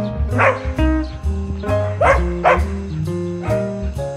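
Guitar music, with a dog barking three times: once near the start and twice in quick succession about two seconds in.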